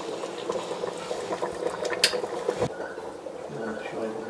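Ginger, pineapple and grapefruit marmalade bubbling as it simmers in a pot on the stove, with one sharp click about halfway through.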